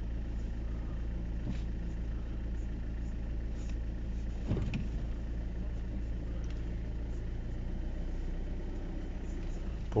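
Volvo XC60 D4's 2.0-litre four-cylinder diesel idling steadily, heard from inside the cabin.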